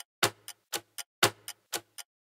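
Ticking clock sound effect used as a quiz countdown timer: about four sharp ticks a second, the strongest once a second.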